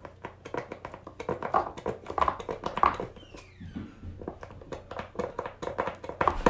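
Thick hand soap being dispensed into a bowl: a run of irregular clicks and short wet squelches, with a brief falling squeak about three seconds in.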